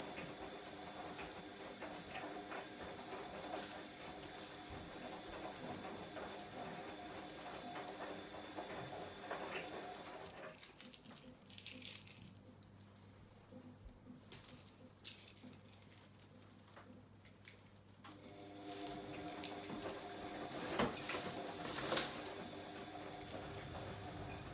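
Faint rustling and scattered light clicks of ivy leaves and stems being handled as dead leaves are picked off, over a steady low background hum that drops away for a few seconds in the middle.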